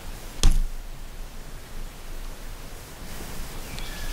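Steady background hiss with a single sharp knock about half a second in.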